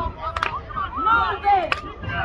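Voices talking close by, cut by two sharp cracks, one about half a second in and another near the end.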